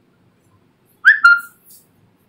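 A brief, loud, high-pitched whistle-like squeak about a second in, in two parts: a short rising chirp, then a steady tone.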